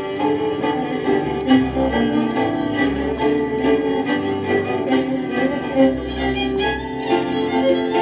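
Hungarian folk dance music led by a fiddle over a bowed string accompaniment with a bass line, played at a steady beat.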